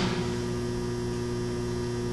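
Steady electrical mains hum, a constant buzz made of several steady tones that runs without change.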